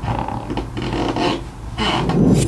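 Rubbing and scraping noises, like hands handling something close to the microphone.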